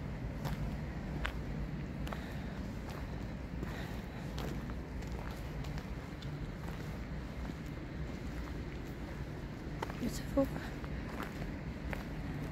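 Footsteps walking on grass, a series of faint, irregular soft steps over a steady low rumble.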